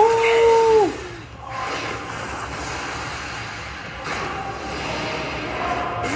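Anime episode soundtrack: a character's shout, held on one pitch for about a second and falling off at the end, followed by a steady rushing, hissing noise of battle sound effects.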